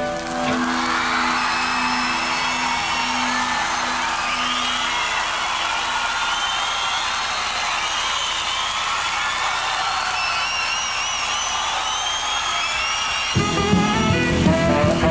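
Concert audience cheering and applauding, with whistles, after a rock song ends, while the band's last held chord rings on for the first few seconds. The band starts playing again just before the end.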